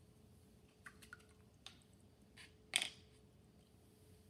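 Quiet handling of painting tools: a few faint light clicks, then one brief, louder swish about three quarters of the way in.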